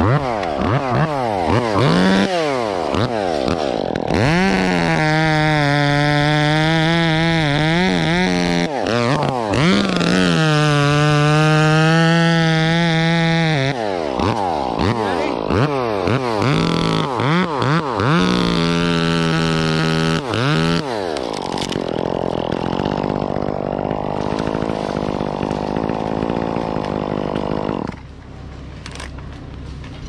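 Chainsaw revving up, then running at high speed while cutting through a rigged limb, its pitch dipping and rising under the cut. About 21 seconds in it drops back to a lower idle, which gets quieter near the end.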